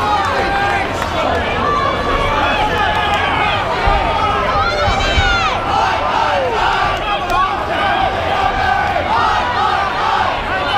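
Boxing crowd shouting and cheering, many voices overlapping, with a single higher shout rising and falling about five seconds in.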